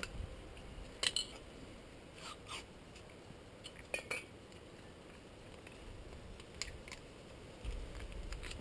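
A small screwdriver scraping and ticking against a rusty metal brake caliper bracket as rust and old grease are picked out of the groove for the guide-pin rubber seal. It comes as a few scattered, short, sharp metal scrapes and clicks with quiet handling between, and a low rumble of handling just before the end.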